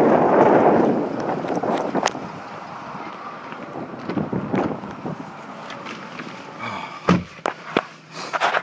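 Wind buffeting the microphone for about the first second, then clicks and handling noises as a 2012 Mazda 6's door is opened and someone climbs in, with a heavy thump about seven seconds in as the door shuts, followed by two lighter clicks.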